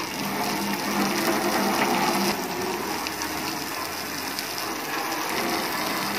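Jet of water from a garden hose spraying against a car's side panel and wheel, a steady spattering hiss that drops a little in level about two seconds in.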